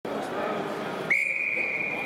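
Wrestling referee's whistle: one long, steady blast starting about a second in, signalling the start of the bout.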